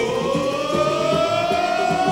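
Samba school drum section playing a steady beat, with a long siren-like tone that slides slowly up in pitch and is then held over the drums.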